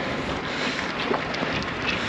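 Wind rushing over the microphone of a camera carried on a moving road bike: a steady, even hiss with a few faint ticks.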